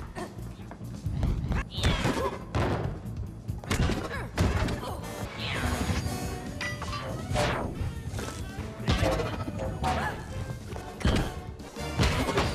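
Action film soundtrack: a driving music score under repeated fight sound effects, with thuds, crashes and quick whooshes through the whole stretch.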